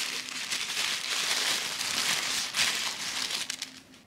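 White paper wrapping crinkling and rustling as a small toy figure is unwrapped by hand. The rustling dies away near the end.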